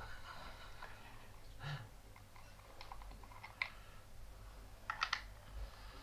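Faint, scattered small clicks and taps of a box mod and rebuildable dripping atomiser being handled, with a quick double click about five seconds in.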